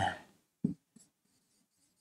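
Dry-erase marker writing on a whiteboard: one short scrape about two-thirds of a second in and a fainter one near the middle.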